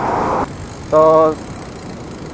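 A single spoken word over the faint, steady background noise of a bicycle ride along a street, picked up by an action camera's own microphone. A short hiss of noise opens the stretch and cuts off after about half a second.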